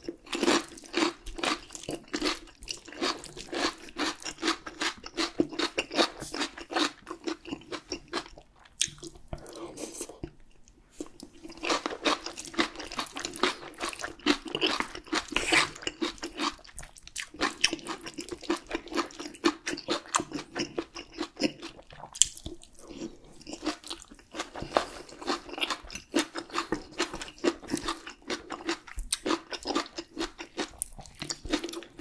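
Close-miked chewing as a person eats spoonfuls of rice mixed with biji (bean-curd-dregs) stew and kimchi. It comes as a run of many quick clicks and smacks, with short lulls about ten seconds in and again around seventeen and twenty-three seconds.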